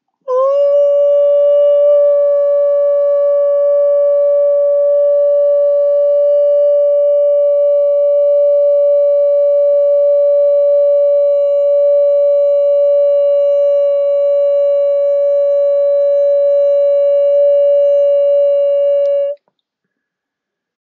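A single loud, steady pitched tone with a ringing edge of overtones. It starts with a brief upward slide about a second in, holds unchanged for about nineteen seconds, then cuts off suddenly.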